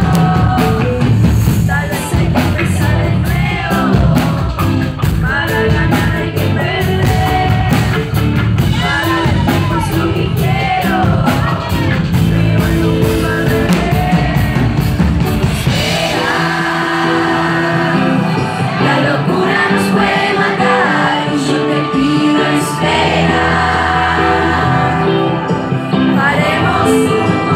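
Live pop-rock band playing: a woman singing into a microphone over electric guitar, bass and drums. About sixteen seconds in, the drums and bass drop out, leaving held chords under her voice.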